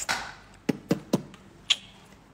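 A brief rush of noise, then three quick sharp taps about a quarter-second apart and one higher, sharper click shortly after.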